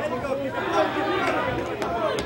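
Spectators and cornermen shouting over one another around an MMA cage, a dense mix of voices with no single clear speaker. Two sharp clicks come near the end.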